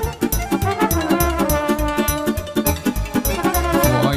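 Live wedding band playing fast traditional folk dance music with a steady, driving beat.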